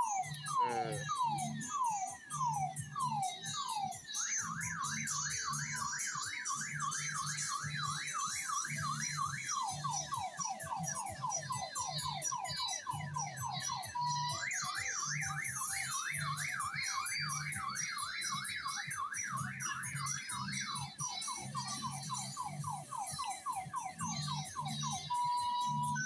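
An electronic siren-style alarm cycling through its tones: a run of falling sweeps, then a fast up-and-down warble, then a short steady tone, and then the same cycle again. A steady low music beat pulses underneath.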